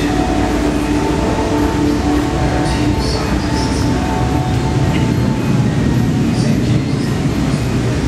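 A steady low rumble with held hum tones over it, from the exhibit's ambient sound installation, with no breaks.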